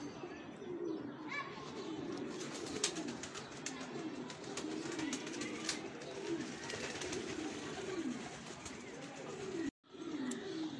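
Domestic pigeons cooing over and over, each coo a low rising-and-falling call, with scattered faint clicks.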